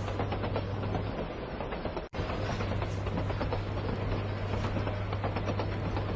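Train running on the rails: a steady rumble with a constant low hum and dense fine clatter. The sound drops out sharply for an instant about two seconds in, then continues.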